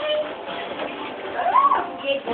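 A young child's high-pitched squeal, one cry that rises and falls in pitch about one and a half seconds in, sounding much like a cat's meow.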